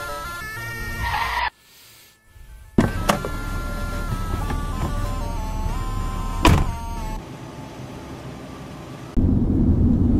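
A melodic pop song playing; it cuts out briefly after about a second and a half, then comes back over a low car rumble, with two sharp knocks. Near the end a louder, steady low rumble of a car's cabin takes over.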